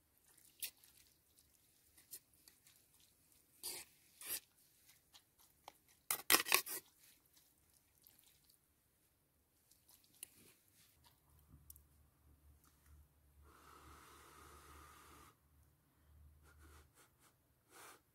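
A metal fork clinks and scrapes against a metal cooking pot as pulled pork is lifted out, in sharp separate clinks with the loudest cluster about six seconds in.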